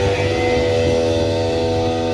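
Live rock band with electric guitars: shortly after the start the guitars settle onto a chord that is held and rings steadily over a low bass note.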